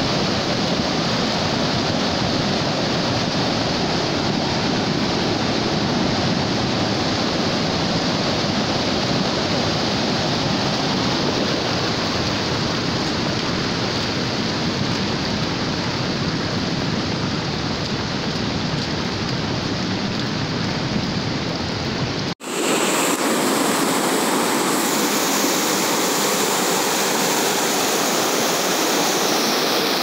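Swollen, muddy floodwater rushing steadily over a road after heavy downpours. About 22 seconds in, the sound cuts briefly and gives way to a thinner, hissier rush of water with less low rumble.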